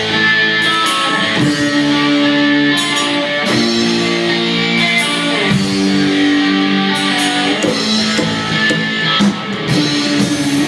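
A rockabilly band playing live: electric guitar chords over slapped upright bass and drums, an instrumental passage with the chords changing every couple of seconds.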